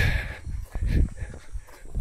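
A man's hard breathing while on the move, with wind rumbling on the microphone and a few soft footfalls on a dirt trail.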